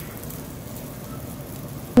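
Quiet, steady sizzle and hiss of meat grilling on a mesh grill over charcoal.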